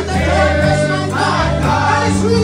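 Church congregation singing a gospel worship song together, backed by instruments holding steady bass notes.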